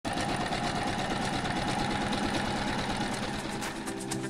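A sewing machine running at speed, stitching with a rapid, steady mechanical rhythm, fading out near the end.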